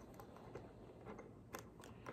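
Near silence with a few faint, brief clicks and taps from a glass swing-top spice jar being handled on a countertop.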